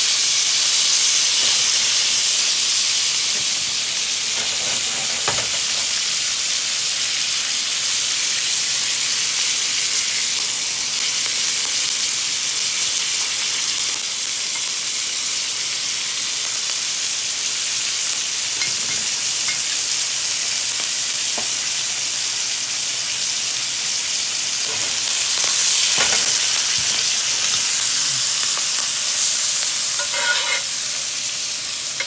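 Prime strip loin steak searing in a hot cast-iron skillet with garlic cloves and thyme, fat and juices sizzling steadily, with a few faint clicks.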